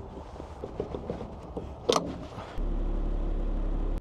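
A few light clicks and one sharp knock, then a semi truck's engine rumble cuts in abruptly about two-thirds of the way through and holds steady.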